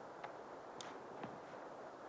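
Faint, steady rush of river current, with three soft ticks spaced about half a second apart.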